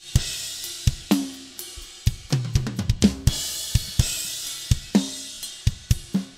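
Multitrack acoustic drum kit recording playing back: kick and snare strikes over a steady hi-hat and cymbal wash, with a quick run of tom hits a little past two seconds in. The snare track has been de-bled of its hi-hat and tom spill.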